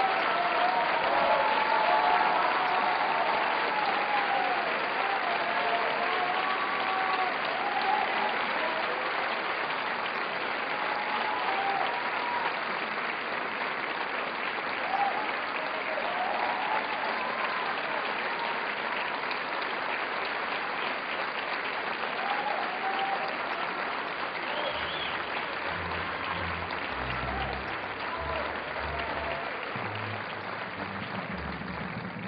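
A large theatre audience applauding at length after an opera aria, with voices calling out over the clapping, most often in the first several seconds. A low sound comes in under the applause near the end.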